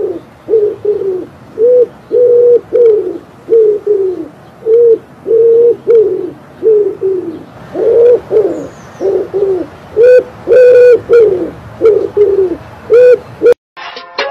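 Pigeon cooing: a long run of low coo notes, about two a second, many of them held and then falling in pitch.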